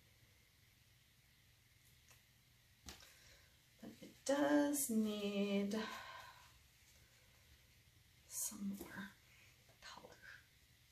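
A woman's voice making a wordless two-part hum, the second part lower, like a thoughtful "mm-hm", about four seconds in, and a shorter one near the end, with a couple of faint ticks just before the first.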